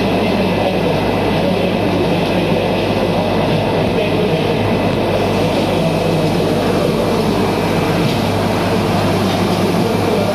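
Fish-tank aeration running: a steady low machine hum under the continuous bubbling and churning of water at ring-shaped air diffusers in large breeding tanks.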